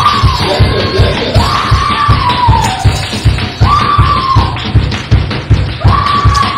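Live church band music: a drum kit keeps a quick, steady beat under a man's voice over the microphone holding long, high notes in several phrases.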